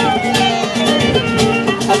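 Live rumba catalana band playing an instrumental bar: acoustic guitars strumming the rumba rhythm, with cajón and held clarinet notes.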